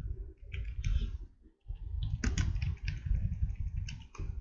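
Computer keyboard being typed on: runs of quick keystrokes, with a short pause about a second and a half in.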